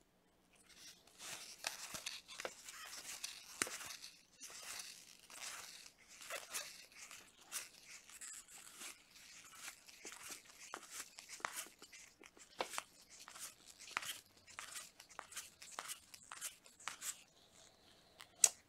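2021 Topps baseball cards being slid off a stack one at a time by gloved hands: a faint, irregular run of soft card-on-card slides and clicks.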